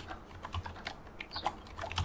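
Faint typing on a computer keyboard: a scatter of light, irregular key clicks.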